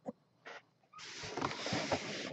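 Hands handling a clear plastic helmet display cube: a light click, then from about a second in a soft rustle and scrape of plastic as the cube is picked up.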